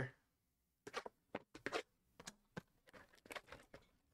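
Trading-card packaging being handled: faint, irregular short crackles and taps of cardboard and plastic as a hobby box is opened and its pack taken out.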